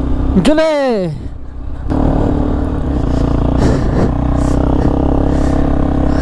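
Hero XPulse 200 single-cylinder motorcycle engine comes in about two seconds in and runs at a steady, even pitch.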